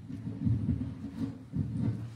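Low, irregular rumbling and bumping of a microphone being handled at the pulpit, in uneven surges with a short break about one and a half seconds in.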